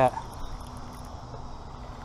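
Insects, crickets, chirping steadily over a low, even rumble.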